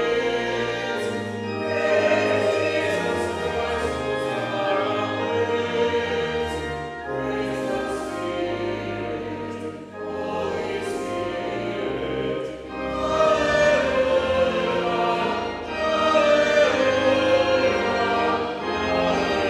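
A church congregation singing a hymn together in phrases, with brief pauses between lines.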